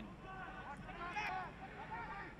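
Faint, distant voices calling out across a soccer pitch, over the steady background noise of the stadium.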